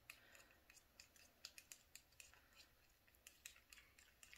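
Faint, irregular small clicks and scrapes of a plastic lid being worked off a small cup of mixed acrylic paint.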